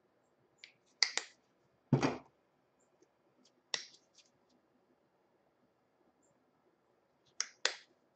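Scattered sharp clicks and knocks of paint cups and containers being handled and set down, the heaviest a dull thump about two seconds in and two quick clicks near the end.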